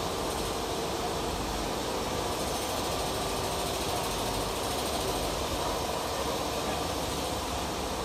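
Mammut VM7 single-needle lockstitch quilting machine running steadily on a mill floor: an even mechanical running noise with a faint steady hum.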